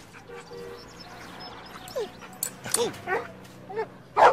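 Small dog whimpering and yipping: about four short, bending calls starting about halfway through, over soft background music.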